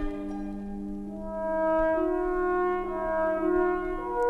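Orchestral interlude between sung verses: a slow, smooth melody on brass, likely French horn, moves over a held low note, with no singing.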